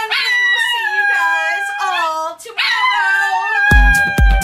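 Several long, wavering howls in a row, sliding up and down in pitch with short breaks between them. Near the end, music with a heavy, regular bass beat comes in.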